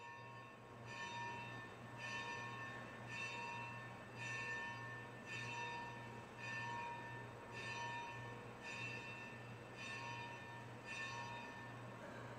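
A single bell tolling, struck about once a second, each stroke ringing on into the next, over a low steady hum.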